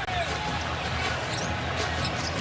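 Basketball dribbled on a hardwood court, repeated bounces over the steady noise of the arena crowd.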